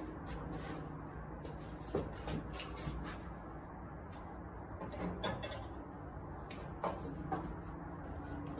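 A few scattered knocks and clanks from a light plate-loaded barbell being picked up and lifted onto the shoulders, over a steady low background hum.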